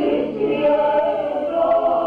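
A mixed group of Górale highland folk singers, men and women, singing a folk song together in chorus, holding long notes.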